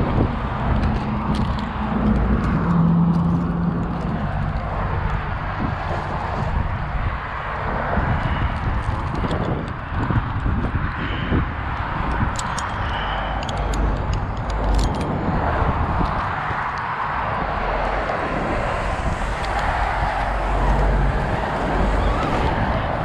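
Steady road traffic noise with a low rumble, and a few light metallic clicks of rope-climbing hardware (carabiners and snap hook) around the middle.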